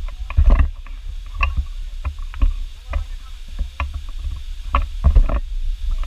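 Footsteps on a rocky dirt trail strewn with leaves: irregular crunches and knocks, heaviest about half a second in and again about five seconds in, over a steady low rumble on the microphone.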